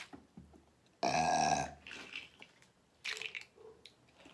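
A woman's single loud, deep burp about a second in, lasting under a second. A short crackle follows a couple of seconds later.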